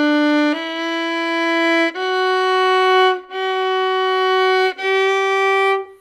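Solo violin bowing slow, long notes up a D major scale, five notes stepping upward. Some notes drift slightly in pitch after they start: the sign of left-hand fingers that don't commit and keep adjusting, which spoils the intonation.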